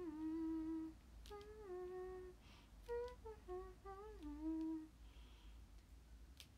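A young woman humming a tune in three short phrases of held and gliding notes, with brief pauses between them. She stops near the end.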